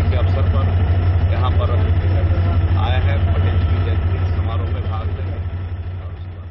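Steady, loud low rumble of an idling engine, with faint voices of people close by.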